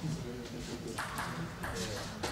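Table tennis ball clicking sharply on the table and bat a few times, in two pairs of quick taps about a second in and again near the end, over a murmur of voices in the hall.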